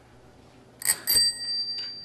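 A small bell, such as a desk bell, struck twice in quick succession about a second in, its ring dying away slowly.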